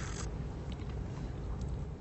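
A short, soft sip of hot tea from a glass cup near the start, then quiet room tone with a few faint light ticks.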